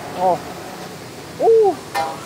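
A voice calls out a drawn-out "oh!" twice, each rising and then falling in pitch, over the steady hiss of a high-flame gas wok burner with a wok of morning glory frying on it.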